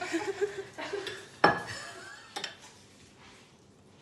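Kitchen utensil sounds as melted chocolate is stirred in a bowl with a silicone spatula: light clinks and scrapes, one sharp knock about a second and a half in and a smaller one about a second later, then quieter.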